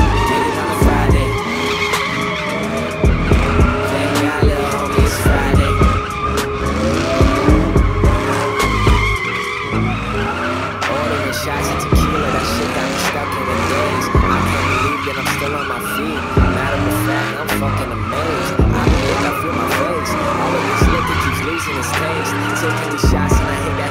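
Pickup truck spinning donuts: its tyres squeal continuously and its engine revs up and down again and again, with bass-heavy music playing over it.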